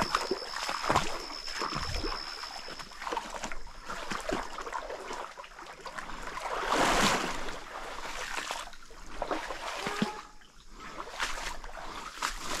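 Booted feet wading slowly through a shallow stream: splashing steps about once a second, with a bigger, longer slosh around seven seconds in.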